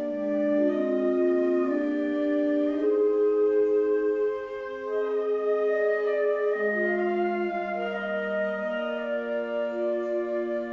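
Wind ensemble of flutes, clarinet and low brass playing a slow, hymn-like chorale transcribed from a choral work. Sustained chords move every second or two, with a brief softening about four and a half seconds in.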